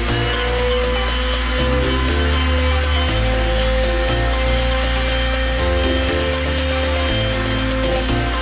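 Background music with a steady electronic beat, over the steady whine of an electric orbital palm sander wet-sanding a plastic headlamp lens to take out scratches.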